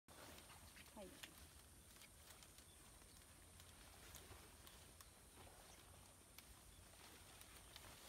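Near silence: faint outdoor ambience in a tea field, with scattered faint clicks and one brief faint call about a second in.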